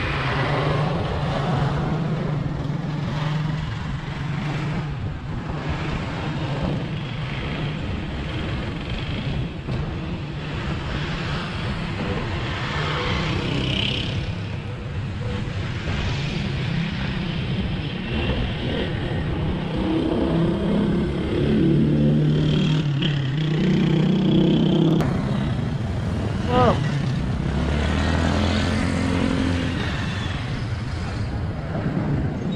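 Street traffic heard from a moving bicycle: motorbike and car engines running and passing, with wind and road rumble on the microphone. A louder engine passes about twenty seconds in.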